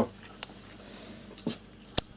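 A few light knocks and clicks of tableware being handled at a meal table, three in all, the sharpest near the end.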